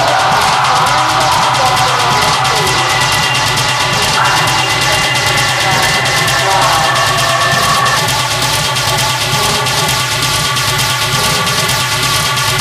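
Industrial hard techno in a DJ mix: a steady driving beat under dense, raw, noisy textures. A layer of held synth tones comes through more clearly about eight seconds in.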